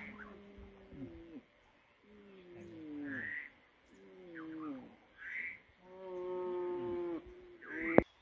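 Repeated animal calls: pitched calls about a second long, most falling in pitch, come about every two seconds, each followed by a short high chirp.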